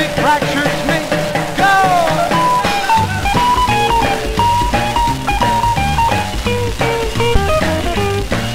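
Instrumental break of an early-1950s rock and roll record played from a 78 rpm disc: a guitar lead over bass and drums, with gliding notes at first and then repeated riffs. The bass and drums come in more strongly about three seconds in.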